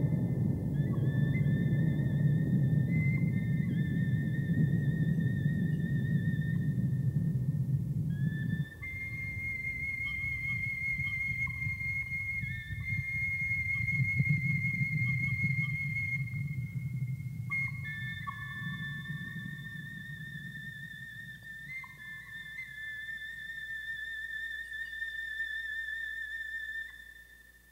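Music score of high, wavering, whistle-like tones held long and stepping between a few pitches, over a deep rumble. The rumble breaks off abruptly about nine seconds in, comes back and fades toward the end.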